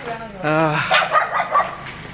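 Men's voices talking loudly and excitedly in Malayalam.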